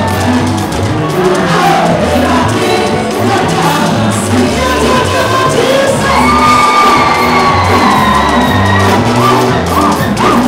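Live gospel praise band with drum kit, bass and electric guitar playing a steady beat, while a woman sings lead through the PA and the congregation sings along and cheers. A long note is held from about six seconds in until nearly nine.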